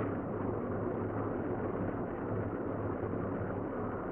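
Steady room tone: a low hum with an even hiss beneath it.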